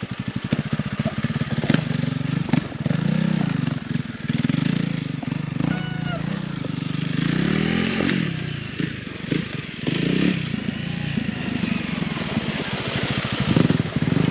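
Honda CRF300L single-cylinder dirt bike engines running: one idling steadily close by while another is ridden off over rough ground, its revs rising and falling.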